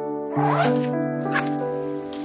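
Zipper on a fabric laptop sleeve being pulled closed in short rasping strokes, over soft background piano music.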